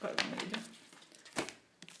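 Foil wrapper of a Pokémon card booster pack crinkling as it is handled in the hands, with a sharp crackle about one and a half seconds in.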